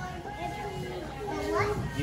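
Background chatter of children and adults in a busy room, with one child's voice rising in pitch about one and a half seconds in.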